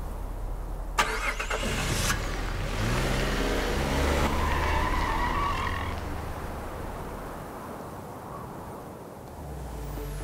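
Jeep Wrangler engine: a sharp click about a second in, then the engine revs up with rising pitch and fades away over the last few seconds. Music comes in near the end.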